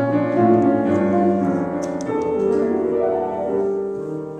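Grand piano playing slow, sustained chords as the accompaniment to a jazz ballad, with a new chord struck right at the start.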